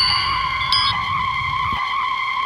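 A steady high-pitched tone held without a break, a skid-like sound effect, with a few short chiming notes at the start and a low rumble underneath that stops near the end.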